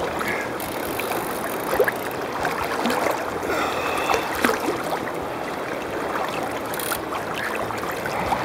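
River water swirling and splashing as a hooked winter steelhead thrashes at the surface close by, with scattered small splashes over a steady wash of moving water.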